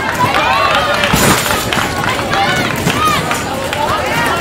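Several overlapping high-pitched voices shouting and calling out across an outdoor soccer field, with a brief burst of noise about a second in.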